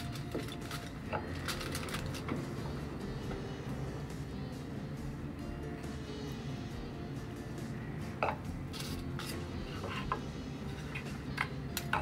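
Quiet background music with a steady low accompaniment, with a few faint small clicks and rustles from hands working on a workbench.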